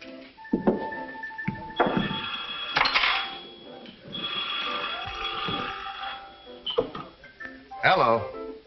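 Old wall-mounted telephone bell ringing twice, the second ring longer, over background music and bar murmur.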